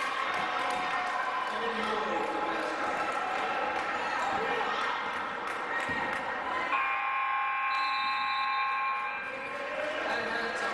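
Gymnasium scoreboard horn sounding steadily for about two and a half seconds, starting a little before the seven-second mark, as the game clock runs out to end the period. Under it, a basketball is being dribbled on the hardwood and spectators are talking.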